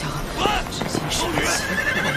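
A horse neighing, loudest about half a second in.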